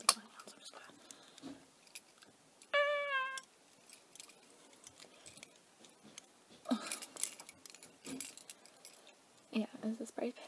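Metal pins on a lanyard clinking and rattling as it is handled, with scattered small clicks and a denser burst of clinks and rustle about seven seconds in. A short steady pitched note sounds about three seconds in.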